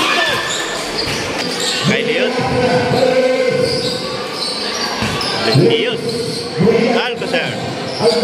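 Basketball bouncing on a concrete court during play, a few separate thuds, amid the voices and shouts of spectators and players.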